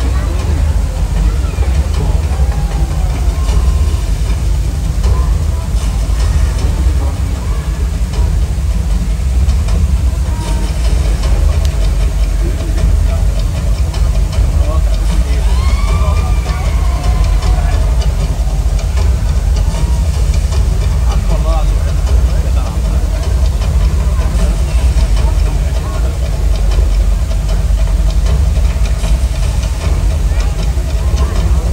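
Steady, loud rushing of water pouring from an overhead rain effect onto a pool, heavy in low rumble, under the scattered chatter of a large seated crowd.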